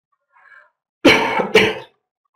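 A woman coughing: two short harsh coughs in quick succession, starting about a second in.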